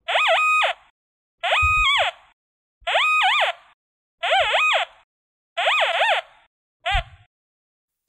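Nokta Invenio metal detector giving its target signal over a buried steel rebar target: six warbling tones, one about every second and a half as the coil passes over, the pitch wavering up and down in each, the last one cut short. A few brief low knocks sound under them.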